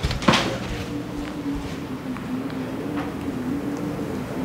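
A single sharp knock, like a door or cupboard, about a third of a second in, followed by a steady low hum with a slight waver.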